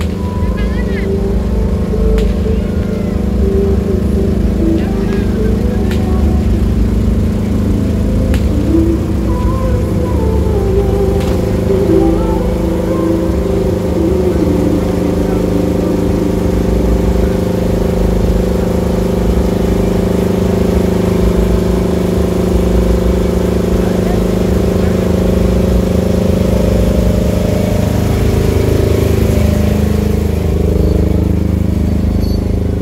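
Loud, steady deep-bass sound from a truck-mounted carnival sound system's speaker stacks, with people's voices over it.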